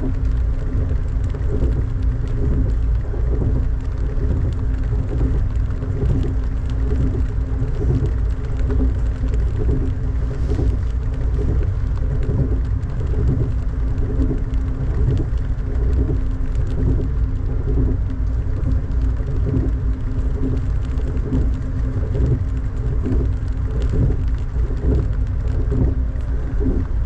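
Inside an Amtrak passenger train running at speed: a steady low rumble with a constant hum and a faint regular pulse about one and a half times a second.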